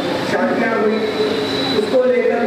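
A man speaking at a microphone. A thin, steady high whistle, rising slightly, sounds under his voice for most of the second half.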